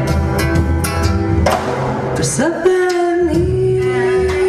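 A woman singing into a microphone over a live band with drums and bass, holding long notes, with a short break about a second and a half in before the next held note.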